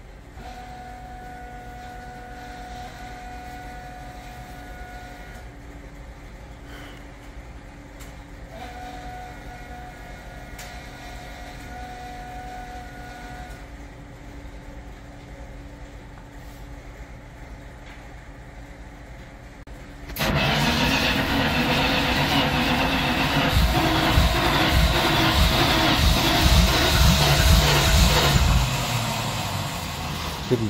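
The engine of a Bombardier tracked snow vehicle, fitted with Holley Sniper fuel injection, starts suddenly about two-thirds of the way in and then runs loudly with an uneven, pulsing low end, easing slightly near the end. This engine has been hard to start and keep running. Before it, a faint steady whine sounds twice, about five seconds each time.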